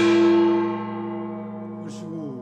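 Korean jing (large brass gong) ringing on after being struck with a padded mallet, its tone dying away slowly, with the pitch bending downward near the end.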